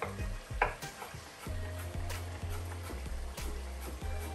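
Kitchen knife slicing potatoes on a wooden chopping board: a string of short knocks, a couple a second, the loudest about half a second in, over background music.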